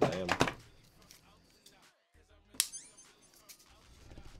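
A single sharp click about two and a half seconds in, followed by a brief high ring: a knife being opened or its blade set in place before scraping at a figure.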